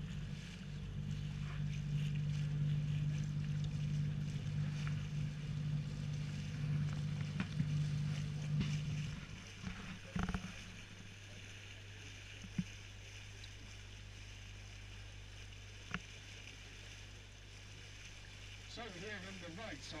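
Canal tour boat's motor running with a steady low hum, then throttled back about nine seconds in to a lower, quieter hum as the boat slows. A single knock comes just after the slowdown.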